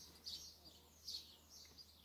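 Near silence: room tone with two faint, high, brief chirps from a bird, one about a third of a second in and one about a second in.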